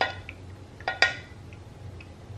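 Metal clinks as a saucepan is tapped against a fine-mesh metal strainer over a glass bowl, shaking off the last of the strained custard: one ringing clink at the start, then two close together about a second in, the second the loudest.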